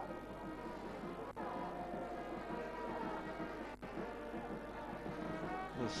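A steady drone of many overlapping, held horn-like tones at different pitches, with two brief dips in level.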